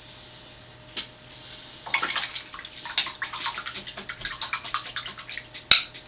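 A face-painting brush being rinsed in a cup of water: a quick run of swishing and clinking against the cup, then one sharp tap near the end.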